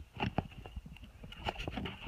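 Handling noise: irregular light clicks and knocks as a phone is screwed onto a mount on the end of a paddle.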